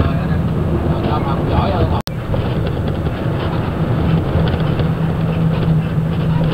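Steady engine drone and road noise inside a moving bus, with a low hum that strengthens toward the end. The sound cuts out for an instant about two seconds in.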